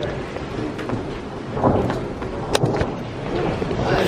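Rain and stormy wind, a steady rushing noise with a low rumble, broken by a couple of sharp clicks about two and a half seconds in.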